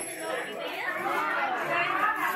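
Background chatter of several people talking at once in a room.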